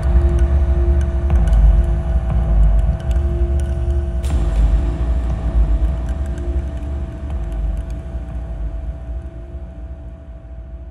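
Dark ambient music: a deep rumbling drone under two steady held tones, with scattered crackling clicks. A hiss enters suddenly about four seconds in, and the whole texture fades slowly down toward the end.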